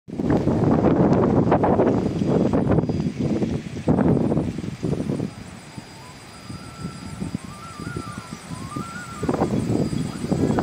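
Wind buffeting the microphone in heavy, uneven gusts. It eases for a few seconds in the middle, when a faint, wavering high tone rising and falling in small steps can be heard, then gusts hard again near the end.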